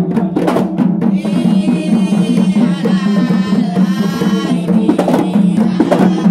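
Kompang frame drums beaten by hand in a steady interlocking rhythm. From about a second in to about five seconds, a high, wavering sustained tone sounds over the drumming.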